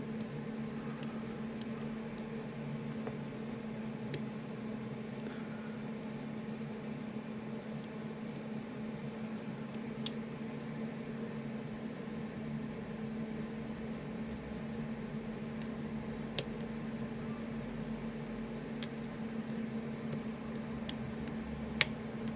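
Faint, scattered clicks and ticks of a steel hook pick setting the pins of an Assa Ruko Flexcore high-security cylinder under tension, about a dozen in all. The sharpest come about ten and sixteen seconds in, and one near the end is a pin setting. A steady low hum runs underneath.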